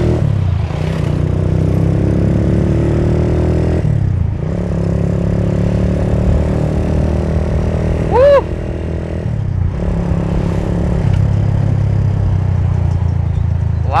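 Suzuki Thunder 125's single-cylinder four-stroke engine pulling hard through the gears. Its revs climb, drop at a shift about four seconds in, climb again and drop at another shift about nine and a half seconds in, then hold steady, through an exhaust with a soft, bassy note. A short shout of "woo" comes about eight seconds in.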